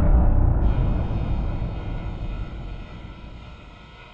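Trailer sound-design impact: a sudden heavy boom followed by a low rumble that fades out over about four seconds. A hissing, static-like layer joins about half a second in.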